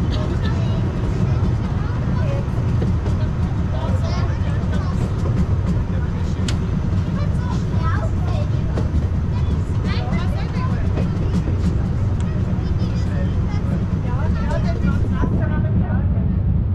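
Brienz Rothorn Bahn rack-railway carriage running uphill, a steady low rumble heard from inside the open carriage, with passengers' voices talking over it.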